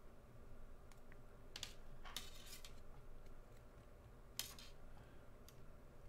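Faint metallic scrapes and clicks of sterling silver wire being handled as a half-round wire is wrapped around square wires: a few short scratches, with a longer one about two seconds in and the sharpest click about four and a half seconds in.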